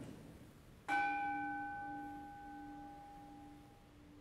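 A bell struck once about a second in, its clear, pulsing tone ringing on and slowly fading, rung to mark the elevation of the bread and wine at the Eucharist.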